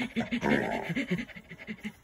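Puppy panting rapidly while mouthing a foot, about seven breaths a second, growing fainter toward the end.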